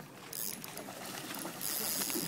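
Water splashing as a fish thrashes at the surface: two bursts of hiss, the second, starting about one and a half seconds in, the louder.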